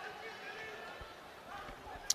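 Faint outdoor stadium ambience during a lull in play: a low steady background with distant voices, and a soft low thump about a second in.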